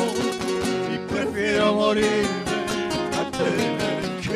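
Several acoustic guitars playing an instrumental passage of a song, with strummed chords in a steady rhythm under a picked melody.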